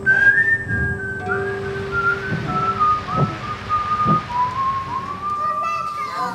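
A person whistling a slow tune over soft background music. The held notes step gradually downward and climb back up a little near the end.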